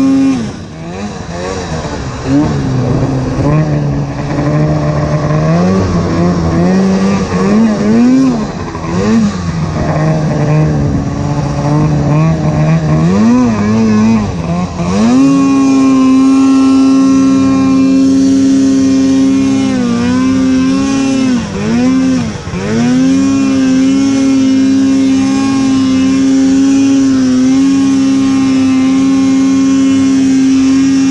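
Snowmobile engine running under changing throttle. For about the first fifteen seconds its pitch rises and falls in short blips, then it climbs and holds a higher steady pitch, with a few brief dips around twenty seconds in.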